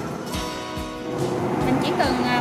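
Background music with steady, held chords.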